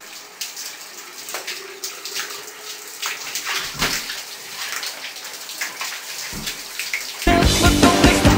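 Shower spray running and splashing on a person for about seven seconds, then loud rock music cuts in suddenly near the end.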